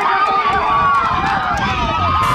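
Men yelling "¡La yegua!" ("the mare!") in long, drawn-out shouts, cheering on a racing mare, with a low rumble underneath.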